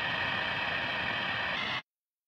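Steady electronic static hiss with a faint high tone running through it, cutting off suddenly near the end into silence.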